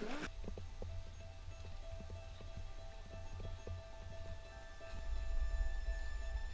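Soft background music of held tones, over a low rumble and faint ticking steps on loose rock.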